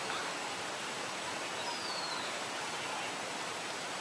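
Steady rushing hiss of water moving through an artificial park pond. About two seconds in, a short, faint high chirp glides downward.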